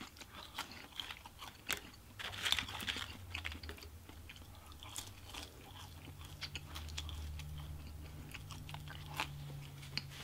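Close-up chewing and crunching of French fries, with scattered wet clicks and crackles from the mouth. A low steady hum runs through the second half.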